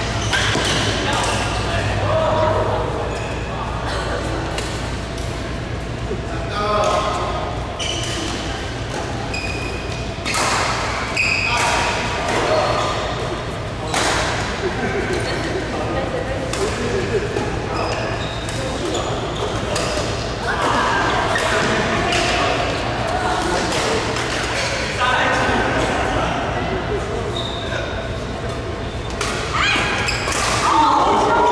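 Badminton rackets striking a shuttlecock: sharp cracks at irregular intervals, echoing in a large hall, with people's voices around them.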